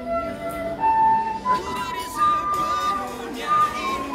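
Soprano recorder playing a slow melody of held notes that step up and down, the longest held for about a second.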